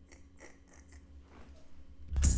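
Faint scattered clicks and rustling from someone moving about close to the microphone, over a low steady hum.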